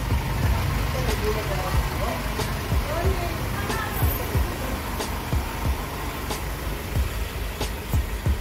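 Background music with a steady beat of low, deep kick-drum thumps under a bass line and a melody or vocal line.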